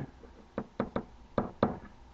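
A pen knocking against a whiteboard as letters are handwritten: about six short, sharp taps in the second half.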